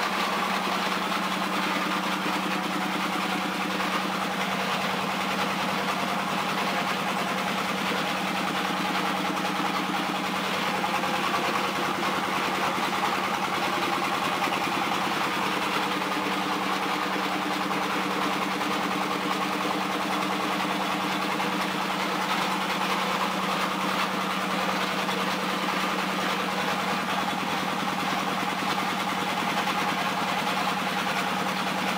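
Mechanical oil expeller running steadily: a constant machine hum with continuous grinding noise, even throughout.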